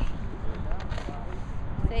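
Brief, faint voice sounds over a low, unsteady rumble on the microphone, with a spoken word starting near the end.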